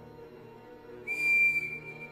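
A sudden shrill whistle tone, one steady pitch, comes in about a second in. It is loud for about half a second, then holds on more softly over a low, steady drone in a film soundtrack.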